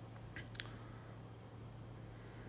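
Quiet room tone with a steady low hum and two faint short clicks about half a second in.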